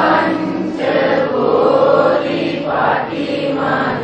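Several voices chanting together in long held notes, the pitch shifting about a second in and again near the end.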